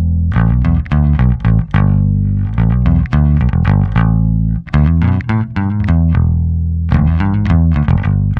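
1976 Rickenbacker 4000 electric bass played clean, straight into an audio interface with both tone and volume pots at maximum: a riff of struck notes, each with a bright attack and a deep, full low end.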